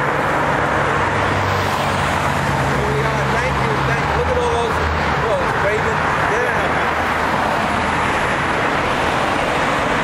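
Steady road traffic noise from cars passing along the roadside, with a low engine hum underneath.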